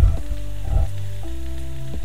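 Soft background music of held notes over a steady bass, the chord changing a little past halfway, with a faint hiss underneath.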